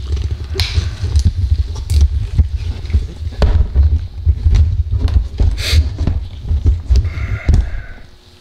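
Handling noise from a camera being held and moved into place: a steady low rumble against the microphone, with frequent knocks and rubbing clicks.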